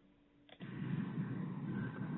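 Dead silence, then about half a second in a steady low rushing noise comes up on the conference audio line, the background of an open microphone between sentences.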